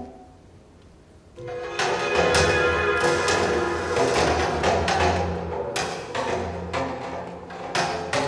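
Computer-composed music soundscape from the 80Hz data sonification of a painting, assembled from sampled sound files chosen by the painting's data values. After a near-quiet gap of about a second and a half, a new piece begins with a low sustained bass and irregular percussive hits.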